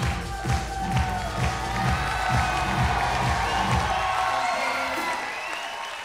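Fast electronic dance music for tecktonik, a steady kick drum at about two beats a second, fading out near the end, with a studio audience applauding and cheering over it.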